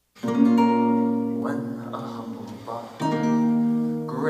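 A song's intro begins: a guitar chord is struck about a quarter second in and left to ring out, and a second chord is struck about three seconds in.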